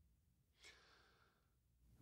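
Near silence, with one faint intake of breath from the man reading a little over half a second in.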